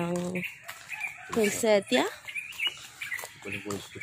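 Chickens calling in the background, mixed with a woman saying "yeah" about two seconds in.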